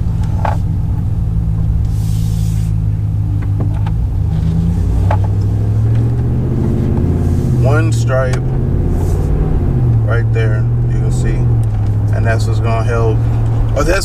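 Vehicle cabin noise while driving: a steady low engine and road drone that rises and falls in pitch a few times as the speed changes.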